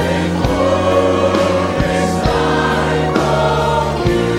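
Large church choir singing a gospel worship song in sustained chords, with instrumental accompaniment: steady low bass notes and occasional drum hits.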